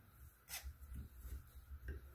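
Faint handling noise and a short sharp click about half a second in, with a few softer ticks after, from brass quarter-turn ball valves on a PEX water manifold being turned by hand; some are tight but close.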